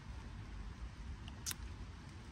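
Faint chewing of tapioca pearls from bubble tea, with one sharp mouth click about a second and a half in, over a low steady rumble.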